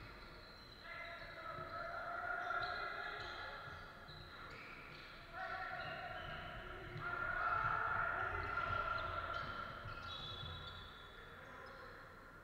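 Basketball game on a hardwood court: the ball bouncing and players' feet thudding as they run, with high squeaks from shoes. The action is loudest from about seven to nine seconds in.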